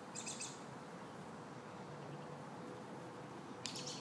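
A small bird chirping outdoors: a quick run of high chirps just after the start and another short burst just before the end, over faint background noise.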